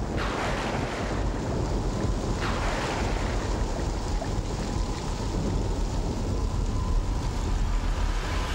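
A steady, loud rushing noise like wind or surf, with two falling whooshes, one right at the start and one about two and a half seconds in, laid as a sound effect over the title sequence's soundtrack.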